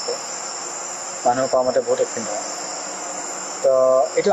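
Crickets chirping in a steady high trill, with a voice breaking in twice briefly, once a little after a second in and again with a short held sound near the end.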